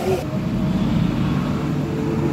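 Steady low rumble of a large indoor hall's ambience with indistinct murmuring voices.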